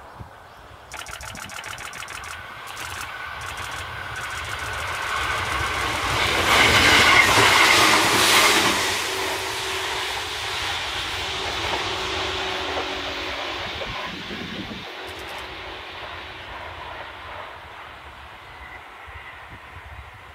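Tobu 6050-series electric train running along the line, its wheels clicking rapidly over the rails. The sound swells to its loudest about seven seconds in, then settles into a steadier hum and slowly fades as the train draws away.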